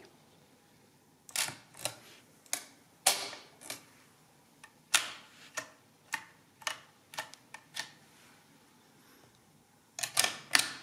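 Hamann Manus E mechanical calculator being reset by hand: a string of about a dozen separate sharp metallic clicks and clacks, the loudest about three and five seconds in, as its levers and clearing knob are worked and the digit wheels snap back to zero.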